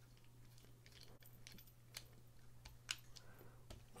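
Faint, scattered light clicks of a small screwdriver bit working the screws of a folding knife's metal handle as it is reassembled, over a low steady hum.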